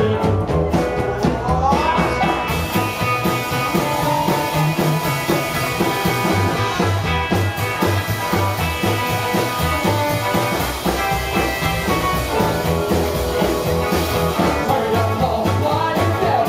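Live rockabilly band playing at a steady loud level: upright double bass, two electric guitars and a drum kit, with a steady, even bass beat.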